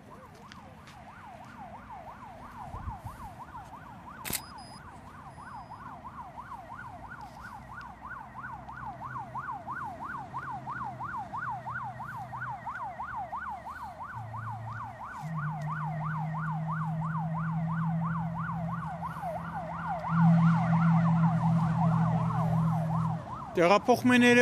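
An emergency-vehicle siren on a fast yelp, its pitch sweeping up and down about three or four times a second and growing louder. A low steady hum joins it about two-thirds of the way in.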